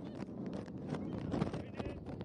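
Footballers running on a grass pitch, irregular thuds of feet and the ball being kicked, with players calling out to each other.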